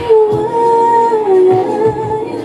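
A woman singing live into a microphone, holding a long note that steps down in pitch about three-quarters of the way through, over a backing track with a low beat.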